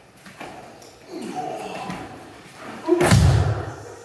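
A man's body hitting a padded martial-arts mat as he is thrown with an ouchi gari (inner reaping trip): one heavy thud about three seconds in, with softer scuffling of feet and cloth before it.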